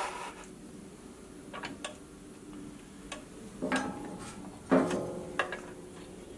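Scattered light knocks, clicks and scrapes as a plywood jig and fence are shifted and set on a bandsaw's metal table: a pair of small clicks about a second and a half in, and louder knocks near the end.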